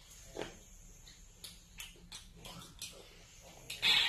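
Faint, scattered small clicks and mouth noises of someone being fed and eating, with a short louder breathy sound just before the end.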